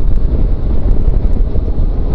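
Wind rumbling on the microphone over the running noise of a motorcycle moving steadily at road speed.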